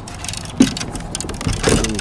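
Clicks and a sharp knock from fishing gear being handled in a kayak, over a steady low rumble.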